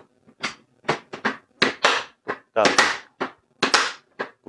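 Hard plastic clicks and knocks from a Meiho VS-7055N tackle box as its carry handle is swung down and the box is handled: a quick, irregular series of about ten sharp strokes.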